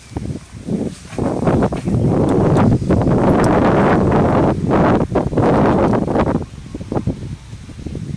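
A loud gust of wind buffeting the microphone for about four seconds, starting about two seconds in and dropping away suddenly. Before and after it come short rustles and clicks of nylon webbing straps and a metal carabiner being handled.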